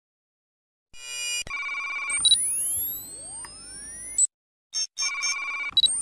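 Synthesized electronic intro sound effects. After about a second of silence there is a burst of beeping tones, then several high rising sweeps that cut off sharply about four seconds in. After a brief gap the beeping returns, and another rising sweep begins near the end.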